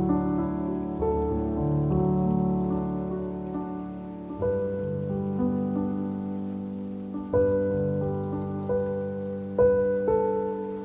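Slow solo piano music: sustained chords struck about every three seconds, each left to ring and fade before the next.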